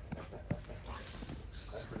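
A Bouvier des Flandres puppy making small sounds as it plays in snow, with one sharp tap about half a second in.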